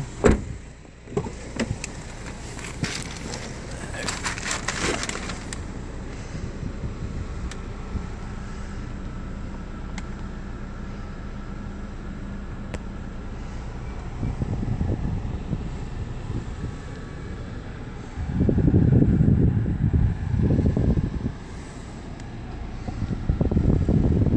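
Knocks and handling noise in the first seconds, then a steady low hum inside a 2013 Chevrolet Captiva's cabin, with louder rumbling stretches in the last third.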